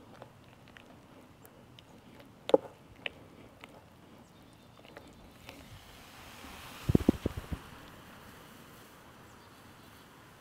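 A metal spoon stirring powdered sugar and sulfuric acid in a glass tumbler, with scattered sharp clinks against the glass. About five and a half seconds in a soft hiss builds as the mixture reacts, and shortly after there is a quick run of low knocks.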